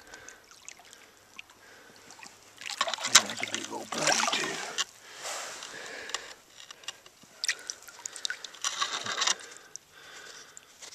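Shallow creek water sloshing and splashing in several bursts as boots wade through it and a hand reaches into the gravel bed and lifts out a stone, with a few sharp clicks of stones.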